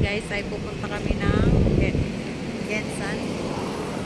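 Road traffic rumbling, louder for about a second midway as a vehicle passes, with short high-pitched voices calling out over it.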